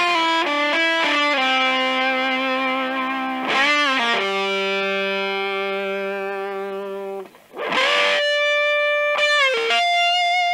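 Electric guitar, an Epiphone Les Paul, played through a silicon Tonebender MkII fuzz pedal: a slow lead line of single notes, thick with fuzz distortion and long sustain, some notes shaken with vibrato. One low note is held for about three seconds, then after a brief break the line moves up higher.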